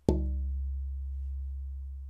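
A granadillo (Platymiscium dimorphandrum) acoustic-guitar back plate, held by its edge, is tapped once and rings on: a long low tone that slowly fades, its higher overtones dying away within about a second. A very ringy, resonant tap tone, the kind a luthier listens for in a good tonewood.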